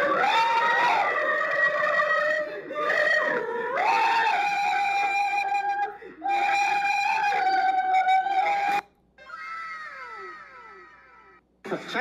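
A high-pitched voice in long held cries, like screaming or squealing, several notes of a second or more each, then a few quieter falling glides near the end.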